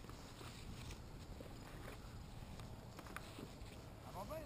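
Faint rustling and a few light clicks of harness straps and buckles being handled, over a low rumble of wind on the microphone.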